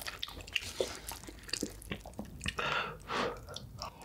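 Close-miked chewing of a mouthful of black bean and spicy noodles, many small mouth clicks, with two brief airy rushes about two and a half and three seconds in.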